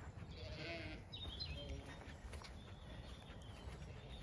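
Zwartbles sheep bleating faintly, one call in the first second and a weaker one near two seconds in.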